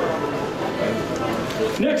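People talking in the background, with a man's announcing voice starting up near the end.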